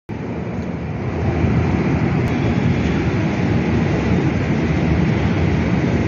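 A steady low vehicle rumble with no clear pitch, growing a little louder about a second in.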